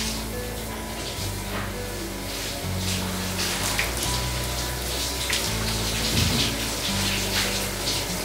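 Handheld shower spraying water onto a person, a steady hiss, under background music of long held low chords that change every second or two.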